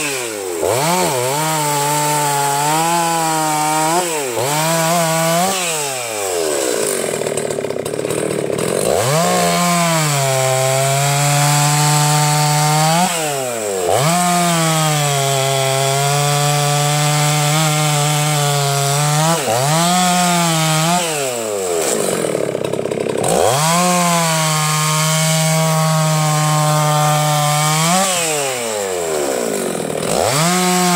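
Husqvarna two-stroke chainsaw bucking logs into rounds. The engine pulls down to a lower, steady pitch under load in each of about five cuts and revs back up in between, with one longer high-revving stretch a few seconds in.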